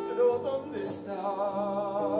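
A live band playing a stage-musical number, with sustained chords. From about a second in, a singer holds a note with a wavering vibrato over the band.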